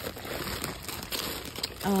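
Plastic packaging crinkling and rustling as it is handled, in irregular crackles.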